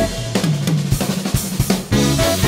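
Jazz-fusion band playing live, with the drum kit to the fore: snare and bass-drum hits over electric bass notes, while the sustained keyboard and horn lines thin out.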